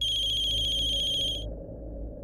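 Telephone ringing with a high electronic trill, lasting about a second and a half and then cutting off.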